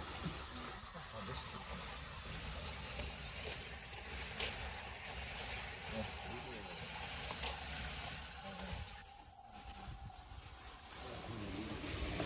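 Spring water running along a shallow concrete channel over pebbles, a steady rushing hiss that thins briefly about nine seconds in.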